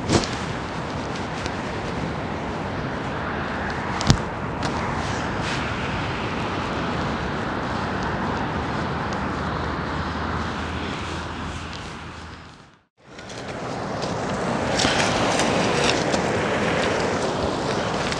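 Ocean surf breaking on the shore, a steady rushing noise, with a single knock about four seconds in. The sound cuts out for a moment about thirteen seconds in and comes back a little louder.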